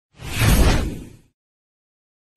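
A whoosh transition sound effect with a deep low rumble, swelling in quickly and fading out just over a second in.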